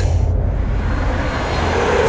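A steady deep rumble with a rush of noise that swells from about half a second in.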